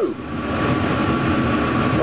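Kitchen range-hood exhaust fan running with a steady, noisy rush and hum.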